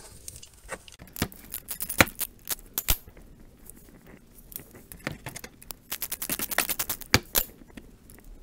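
Socket ratchet clicking as a 13 mm bolt on a power steering line mount is loosened: scattered single clicks, then a quick run of clicks about five seconds in.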